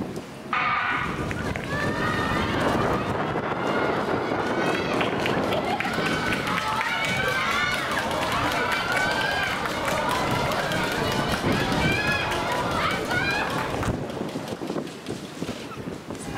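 Many spectators and teammates shouting and cheering on sprinters during a 100 m race, the noise starting abruptly about half a second in and staying loud until it drops off near the end.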